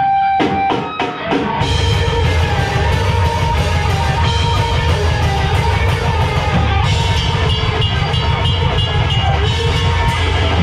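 Live hardcore band launching into a song: a few separate sharp hits in the first second and a half, then guitars and drum kit come in together, loud and dense.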